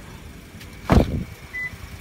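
Car door shut with one heavy thump about a second in, over a steady low hum.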